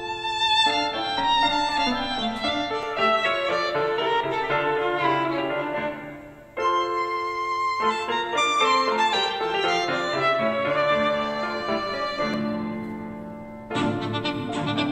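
Violin-and-piano music played through a Zealot S55 Bluetooth speaker as a sound sample. About six and a half seconds in it cuts off and the music starts again through an Eggel Active 2 Bluetooth speaker, for comparison.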